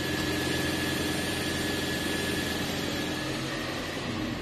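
Toyota Prius C's 1.5-litre four-cylinder petrol engine running steadily at idle, driving the MG1 generator to charge the hybrid battery, with a steady high tone over the engine note.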